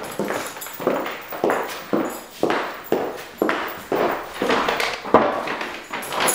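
High-heeled boots walking on a tile floor, a hard heel strike about twice a second.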